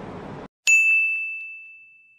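A single bright bell-like ding, an added chime sound effect. It starts sharply about half a second in, out of dead silence, and rings out as it fades over about a second and a half.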